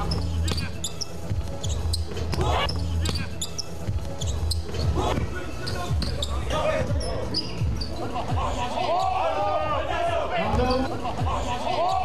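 Basketball bouncing on an indoor court, with short squeaks of sneakers on the floor and players' voices in the hall; the squeaks come thickest in the second half.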